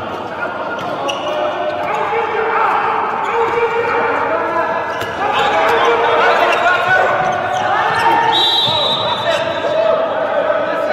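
Handball game play on an indoor court: the ball bouncing and knocking on the floor among players' shouts, echoing in a large, mostly empty hall. A brief high squeak comes just past eight seconds in.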